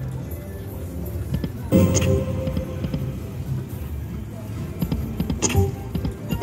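Lock It Link Eureka Treasure Train video slot machine playing its game music and reel-spin sounds. A new spin sets off a sudden sound about two seconds in, and another comes shortly before the end, over a busy casino background.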